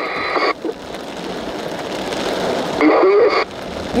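Two-way radio hissing with static after a transmission ends, broken about three seconds in by a short burst of a clipped radio voice, then hissing again.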